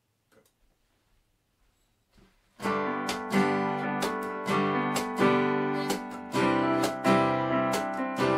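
Near silence for about two and a half seconds, then an acoustic guitar starts strumming chords in a steady rhythm, with a keyboard playing along.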